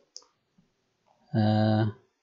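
A single faint computer-keyboard click, then a man's voice holding one flat, drawn-out vowel for about half a second.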